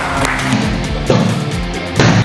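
Loud background music.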